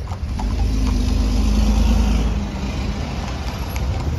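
A motor vehicle driving past, its engine and tyre noise swelling to the loudest about halfway through and then easing off.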